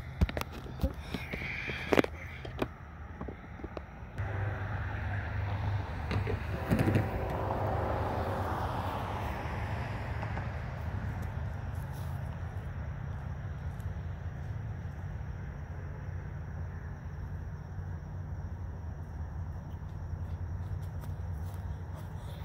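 Distant vehicle noise: a steady low rumble, with one vehicle passing that rises to its loudest about seven to nine seconds in and then slowly fades.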